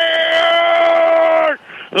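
A radio football commentator's long, held goal shout on one steady high note, heard through a narrow-band radio broadcast. It breaks off about one and a half seconds in for a quick breath, and the next held call starts right at the end.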